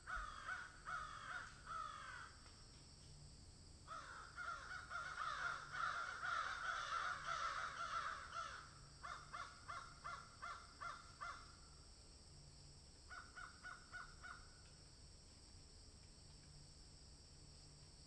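A flock of birds cawing in bursts: a short run of calls at the start, a dense stretch of many overlapping calls in the middle, then evenly spaced caws about three a second and a few more near the end.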